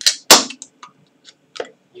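Ring-pull tab of a carbonated highball can snapped open: a sharp crack with a brief hiss of escaping gas about a third of a second in, followed by a few small clicks.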